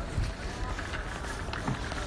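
Low, uneven rumble and knocks from a phone microphone being carried along, with city street noise and faint voices behind it.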